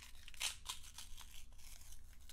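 A paper seal label being peeled off a tiny clear plastic food tray, giving a run of short tearing rasps.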